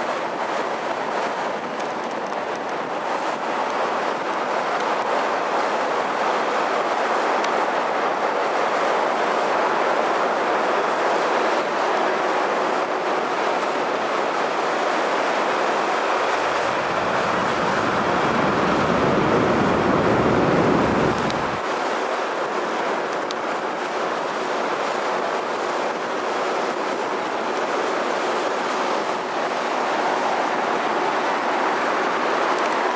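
Steady rushing and engine noise aboard a moving harbour sightseeing ship, with a deeper rumble swelling for about five seconds past the middle.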